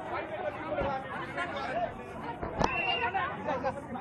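Many voices talking and shouting over one another in a crowd scuffle, with a couple of sharp knocks, the louder one about two and a half seconds in.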